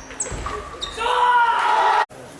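A few sharp table tennis ball and shoe sounds on the court, then from about a second in a loud, sustained shout of celebration from the player and his teammates as the point is won.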